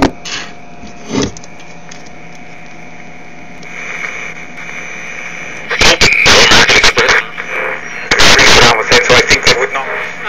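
Panasonic Panapet AM radio being tuned across the dial: two clicks, then faint static with a steady whistle between stations, and from about six seconds in loud, garbled station sound with sweeping squeals as the dial passes over stations.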